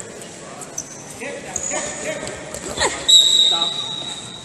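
Wrestlers scuffling on the mat, with a knock as they go down. About three seconds in comes a loud, steady referee's whistle blast, the loudest sound.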